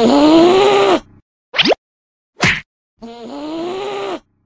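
Cartoon sound effect of an angry, drawn-out groan, heard twice, each about a second long and slowly rising in pitch. Between them come two very quick rising swishes.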